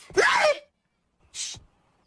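A cartoon character's short voiced cry that falls in pitch, then silence and a brief breathy sound like a sharp intake of breath about a second and a half in.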